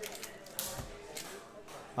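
Faint speech in the background, with a few light clicks or taps.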